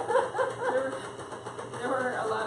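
Women's voices talking indistinctly, over a faint steady low hum.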